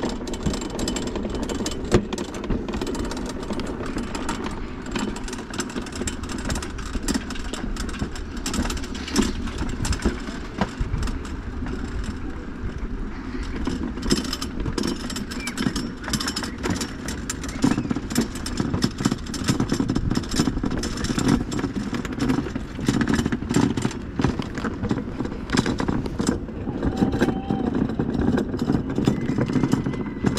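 Wiegand summer bobsled running down its steel trough at speed: a steady rumble with many sharp clacks and rattles throughout.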